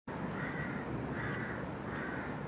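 A crow cawing repeatedly, about a second between calls, over a steady low outdoor rumble.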